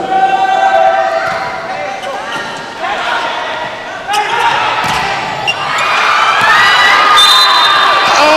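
Volleyball ball strikes from a rally in an indoor arena: a few sharp hits a second or so apart. The crowd's cheering swells into loud, high-pitched screaming near the end as the point is won.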